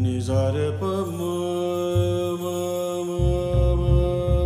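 Male Indian classical vocalist singing: a quick descending run of notes in the first second, settling into one long held note, over low accompanying notes that grow stronger near the end.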